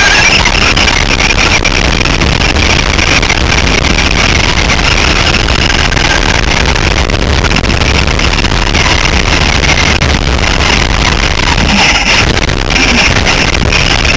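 Traxxas Slash RC short-course truck running at race speed, heard from a camera mounted on the truck itself: a loud, steady, rough noise with no clear tone.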